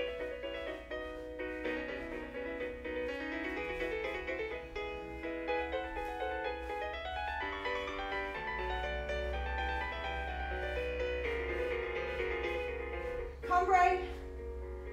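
Piano accompaniment for a ballet barre exercise playing at a steady tempo, chord after chord. A brief louder sound cuts in just before the end.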